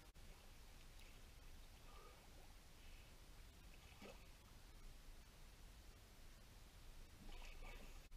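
Near silence: faint sea ambience, with a few soft splashes from a swimmer diving and swimming off.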